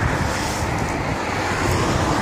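Steady outdoor noise: wind buffeting the microphone over the hiss of road traffic.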